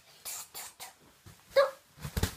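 A small child's breathy huffs, then one short, loud vocal yelp about one and a half seconds in.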